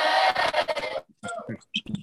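A class of students cheering and shouting together in reply over a video-call line, many voices at once, cutting off about a second in; a few short scattered sounds follow.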